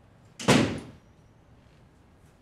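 A wooden door shutting with one loud thud about half a second in, ringing briefly in the room.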